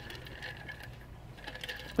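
Faint scattered light clicks and taps over a low steady hum.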